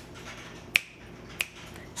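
A person snapping her fingers: single sharp snaps, one right at the start, one about three-quarters of a second in and another about a second and a half in.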